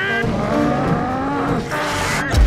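Cartoon flight sound effect: a rising whine that climbs steadily in pitch for about a second and a half as the figures streak through the air, dipping briefly near the end.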